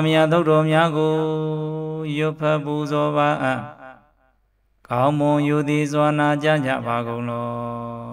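A male monk's voice chanting a Pali sutta in long, steadily held notes, in two phrases with a short breath-pause about four seconds in.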